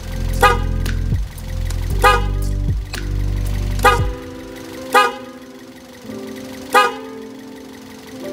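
Toyota Vios electric car horn sounding again, pressed about five times, working once more after corroded fuse pins were cleaned. A low steady hum underneath stops about four seconds in.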